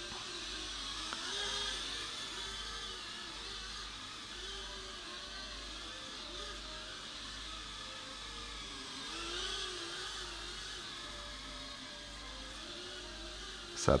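Small toy drone's motors and propellers whirring in flight, fitted in its flying-wing shell, with a pitch that wavers up and down as it flies.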